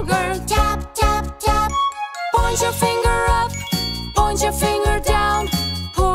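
A children's nursery-rhyme song: a voice singing the lyrics over bright, bouncy backing music, with a brief pause about two seconds in.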